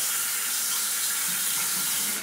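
Water running steadily from a bathroom sink tap as a double-edge safety razor is rinsed under the stream.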